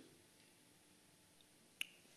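Near silence: faint room tone, broken by one short sharp click near the end.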